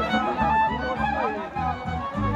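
Folk fiddle playing a wavering melody over a steady, pulsing low beat from the accompaniment, with crowd voices faint underneath.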